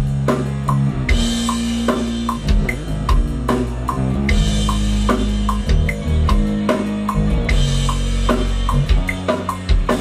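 Four-string electric bass playing a steady line of sustained low notes along with a drum backing track, during a recording take.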